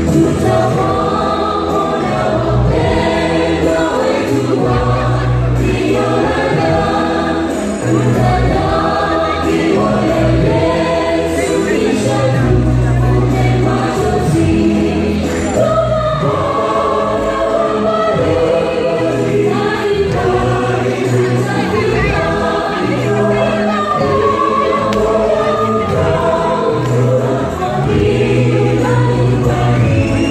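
Mixed gospel choir singing a song in harmony, continuously.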